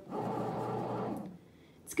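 Bread machine kneading dough, its motor and paddle making a steady churning hum that fades out about a second and a half in.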